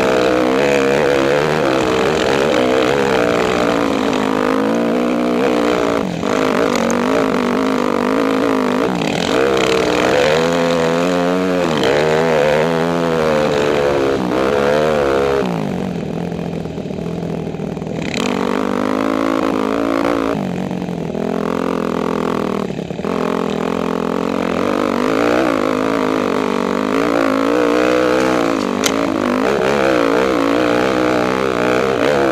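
Dirt bike engine under load on a climb, its pitch rising and falling again and again with the throttle. A little past halfway it drops to a lower, quieter note for a couple of seconds before pulling again.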